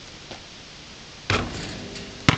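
A basketball strikes the metal rim and backboard of an outdoor hoop with one loud clang about a second and a half in, and the rim keeps ringing afterward as the shot drops in.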